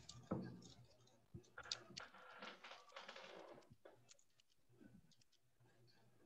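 Faint typing on a computer keyboard, with scattered key clicks picked up by a video-call microphone.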